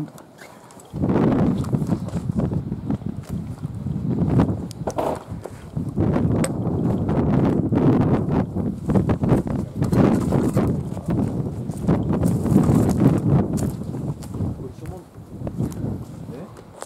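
Footsteps through grass with loud rustling and handling noise from a hand-carried camera, starting about a second in and continuing unevenly.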